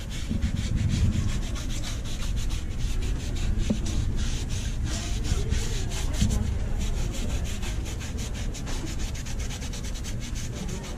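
Quick, steady back-and-forth scrubbing strokes of a hand-held cleaning pad against the sidewall and sole of a white sneaker, a dry scratchy rubbing repeated several times a second.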